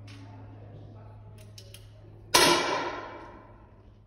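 A single shot from a competition target rifle about two seconds in, a sharp report that rings out in the range hall for over half a second.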